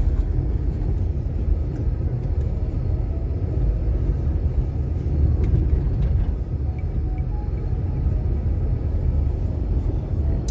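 Steady low rumble of a car driving on an unpaved gravel and dirt road, heard from inside the cabin: tyre and road noise with the engine under it.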